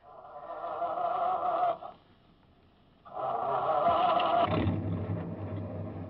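Radio-drama sound effect of a truck being started: the starter cranks in a short burst, stops, cranks again, and the engine catches and runs low and steady from about two-thirds of the way in.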